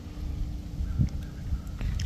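Low rumble of wind and handling noise on a hand-held camera's microphone, with one soft thump about a second in.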